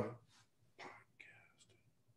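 The end of a man's spoken word, then faint breathy, whispery mouth sounds and a small click during a pause in speech.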